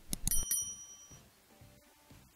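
A few quick clicks, then a bright, high bell ding that rings out and fades within about a second. This is the click-and-bell sound effect of a YouTube subscribe-button animation.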